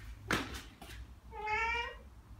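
A Ragdoll cat giving one meow of about half a second, a little past the middle, after a brief sharp noise near the start.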